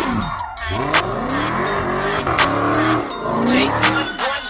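A car's engine revving hard through a smoky burnout, its pitch falling and climbing several times, mixed with music that has a steady drum beat.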